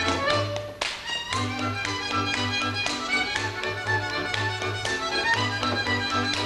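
A Hungarian folk band of fiddles playing lively dance music over a pulsing bass line, with the sharp taps of a solo dancer's steps and claps cutting through it.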